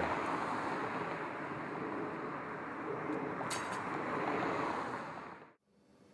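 Steady rushing outdoor street ambience that fades out about five seconds in, leaving near silence.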